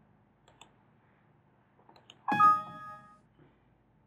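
A few mouse clicks, then a short Windows system warning chime, several notes sounding together and fading within about a second, as an error dialog pops up to flag a missing entry.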